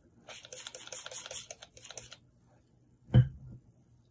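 A wide watercolour brush scrubbing quickly back and forth across textured watercolour paper to wet it, in a rapid scratchy run of strokes for about two seconds. About three seconds in there is a single thump.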